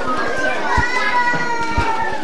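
Many children's voices talking and calling over one another, one of them drawn out on a long, slightly falling note, with a few low thumps mixed in.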